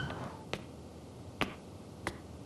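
A woman's footsteps on a hard floor: two short, sharp clicks about a second apart.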